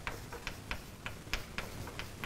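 Chalk writing on a blackboard: a string of short, uneven taps and clicks, about four a second.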